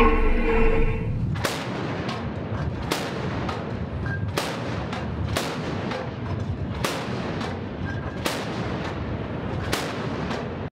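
A ship's deck gun firing single shots in a slow, steady series, about seven reports roughly a second and a half apart, each with a short ringing tail over steady wind and sea noise.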